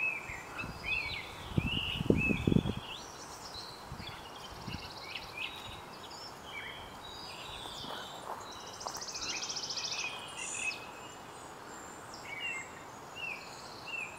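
Songbirds chirping and calling in many short notes, with a higher, even buzzing trill twice, over steady outdoor hiss. A few brief low rumbles come about two seconds in.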